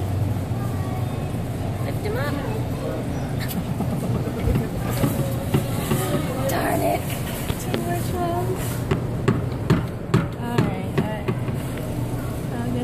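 Arcade room sound: a steady low hum with indistinct voices, and a quick run of sharp clicks or taps near the end.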